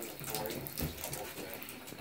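Bathtub tap running, a thin stream of water splashing into the tub.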